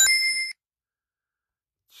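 A short, high electronic ding with a few ringing pitches, cut off abruptly after about half a second and followed by dead silence.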